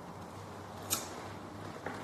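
Low room noise with a steady hum, broken by one sharp click about a second in and a fainter click near the end.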